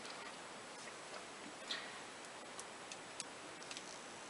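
A few faint, light clicks of small glass nail polish bottles being handled and set among others on a shelf, spaced irregularly over a quiet room hiss.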